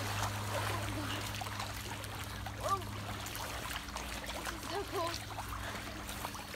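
Pool water sloshing and splashing as waves churned up by two swimming children wash across the pool and over its edge, with a steady low hum underneath.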